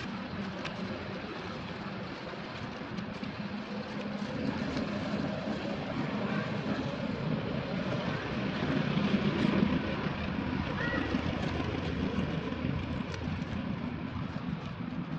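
Low, steady drone of a distant engine, swelling toward the middle and easing off again.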